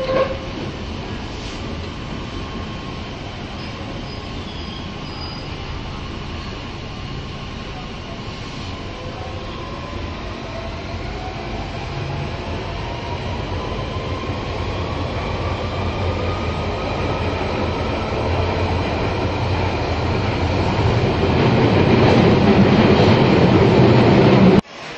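Waterloo & City line tube train running, heard from inside the carriage: a steady rumble with a motor whine that rises in pitch through the middle, and the noise grows louder toward the end.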